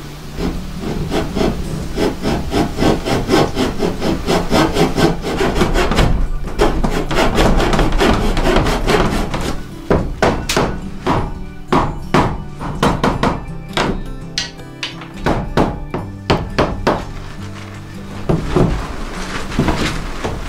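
Coping saw cutting into a wooden frame rail in quick back-and-forth strokes, then a run of separate sharp knocks as a wood chisel chops out the groove to widen it. Background music plays underneath.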